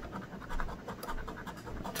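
A metal scratcher coin scraping the silver coating off a lottery scratch ticket in quick, rapid strokes.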